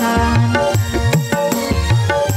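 Dangdut backing track playing: hand-drum (kendang) beats whose low pitch bends up and down between strokes, under held instrumental notes, with no singing.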